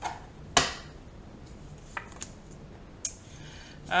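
Tarot cards handled on a wooden table: a sharp tap about half a second in as a card or the deck is set down, then a few light clicks.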